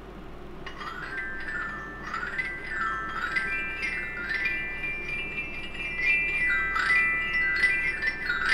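Glockenspiel played in quick rising and falling runs, the ringing notes overlapping, as a sound effect for water bubbling up. The runs begin about a second in.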